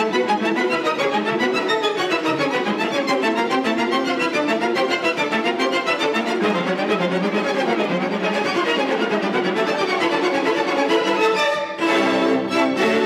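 A chamber orchestra's string section, violins and cellos, playing a continuous passage of classical music with many moving notes, with a brief break near the end.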